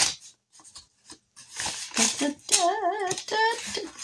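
A paper envelope being opened by hand: short bursts of rustling and tearing paper. A brief wavering hum comes near the end.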